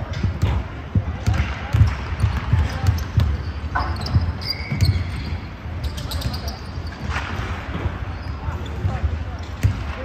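Basketball being dribbled and bounced on a hardwood gym floor, irregular thumps a few times a second, with short high sneaker squeaks and players' voices calling across a large echoing gym.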